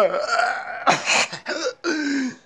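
Wordless sounds from a person's voice: a pitched sound sliding down at the start, a sharp breathy burst about a second in, and another short pitched sound near the end.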